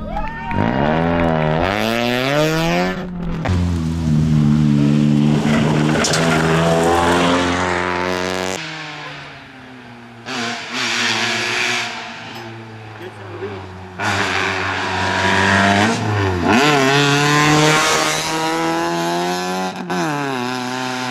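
Fiat Palio rally car's engine revving hard, its pitch sweeping up and down again and again with throttle and gear changes, over several separate passes. At the start it revs while the car is pushed back onto the road after going off.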